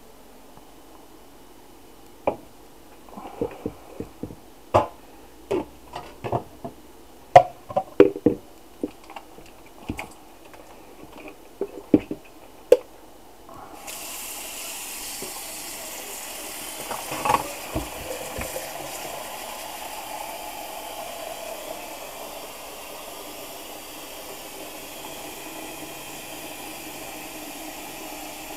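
A dozen or so sharp knocks and clinks of crockery as a white bowl is taken from a cupboard and set down in a stainless-steel sink. About halfway through, the kitchen tap is turned on and water runs steadily into the bowl.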